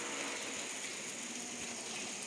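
Steady low hiss of background noise with no distinct sound event.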